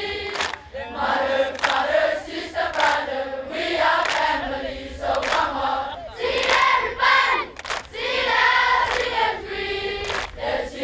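A large group of schoolboys singing together in unison, a loud massed chorus of young voices with a few sharp claps or stamps among it.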